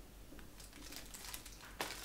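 Faint crinkling of a plastic candy wrapper being handled, with scattered small crackles and a couple of slightly sharper clicks near the end.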